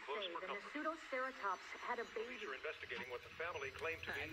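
Indistinct voices from a film's dialogue track playing back, heard with a radio-like thinness.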